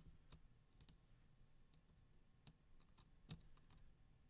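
Near silence with a few faint, sharp clicks, the clearest about three seconds in: steel tweezer tips touching a Nokia Lumia 830's metal chassis as a compression gasket is pressed into place.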